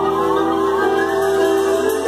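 Live band playing behind a spoken-word reading: held notes with slow upward-gliding tones over them.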